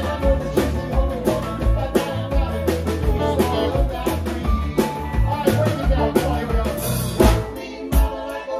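Live band playing a song at a steady beat: drum kit under piano and electric guitar, with a cymbal crash about seven seconds in.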